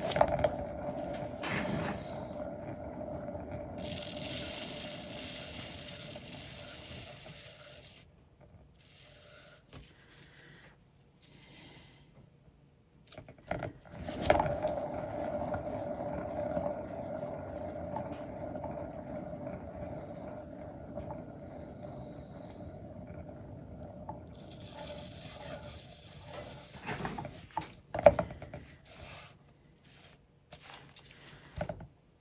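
Hand-spun paint-pouring turntable whirring with a steady tone that fades as it coasts down. It dies away after about eight seconds, is spun again about fourteen seconds in and fades again, and there is a sharp knock near the end.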